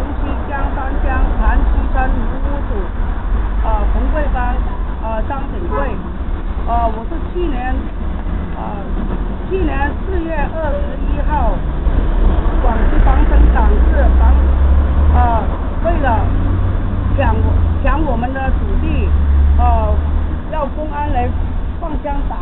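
A woman talking in Mandarin, over a heavy low rumble that grows stronger in the second half.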